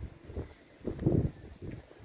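Wind on the microphone: a low, irregular rumble that swells about a second in.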